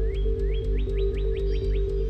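Background electronic music: sustained low tones over a steady pulse and quick even ticks, with short rising synth sweeps that repeat and come faster about halfway through.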